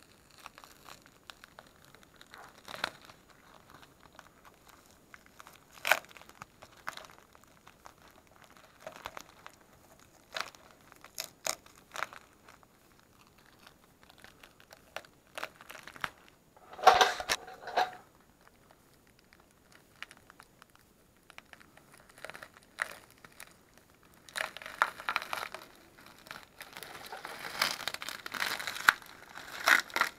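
Masking tape being peeled off a car's freshly painted body panel in short rips and crumpled in the hand, with the loudest rips about 17 seconds in and steadier crinkling near the end.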